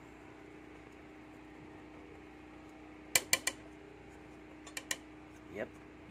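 Steady low hum with sharp plastic clicks as a pepper container is handled over a cooking pot: three quick clicks a little past halfway and two more shortly before the end.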